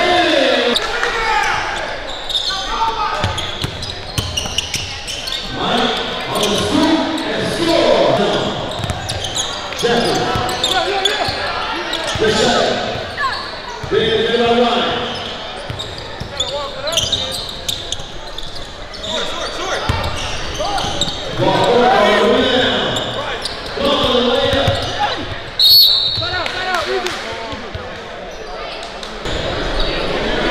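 Basketball game in a large echoing gym: voices from the crowd and court, with a basketball bouncing on the hardwood floor. A short, sharp, high referee's whistle sounds near the end.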